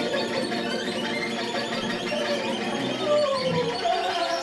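Free-improvised music from viola, violin, cello and voice: a dense layering of bowed string tones, with a falling glide in pitch near the end.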